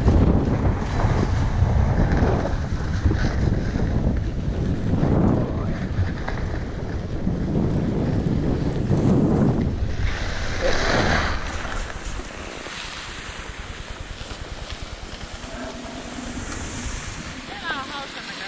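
Wind buffeting the microphone and a ski bike's skis scraping over icy, hard-packed snow on a downhill run, with a harsher scrape about ten seconds in. The noise drops after about twelve seconds as the bike slows to a stop.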